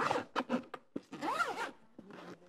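Zipper on a small bag being pulled in several short rasping strokes, then one longer pull with a rising-and-falling tone a little after the middle.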